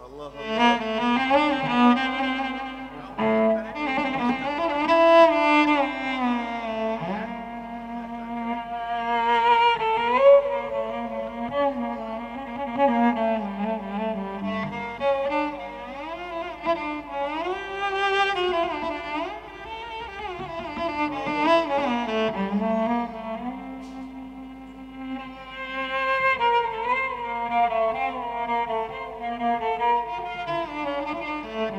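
Live music from a Turkish Sufi music ensemble, with cello and other bowed strings carrying a slow melody full of gliding, ornamented notes over a steady lower line.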